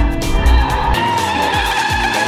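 A race car engine and skidding tyres under background music, with a heavy low engine rumble that drops away about a second in.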